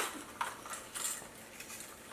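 A fishing-lure blister pack of stiff clear plastic being worked open by hand: a sharp click at the start, then a few fainter clicks and crinkles.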